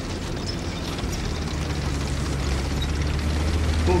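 Low, steady rumble of approaching tank engines from a war drama's soundtrack, growing gradually louder.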